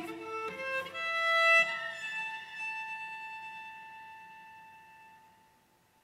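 Solo cello, bowed: a few quick notes, then a final high note held and slowly dying away, gone about five and a half seconds in.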